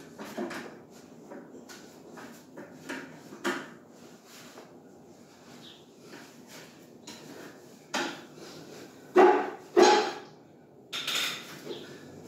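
A man's hands shifting and pressing on a tiled floor while a cotton T-shirt rustles over his arms, heard as a string of short knocks and scuffs. The loudest are a pair of sharper knocks near the end, followed by a longer rustle.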